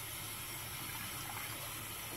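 A steady, even hiss of water-like noise with no distinct splashes.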